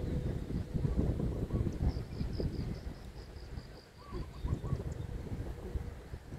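Wind buffeting the microphone in uneven gusts, with a small bird giving a quick run of about a dozen high, slightly falling notes in the middle, about four a second.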